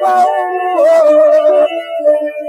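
Cantonese opera music from a 1930 Victor gramophone record: a long, wavering high melody note that drops in pitch about three quarters of a second in and fades out before the end.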